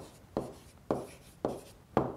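A stylus writing on a tablet screen: about four quick scratching strokes, each starting sharply and fading fast, roughly every half second.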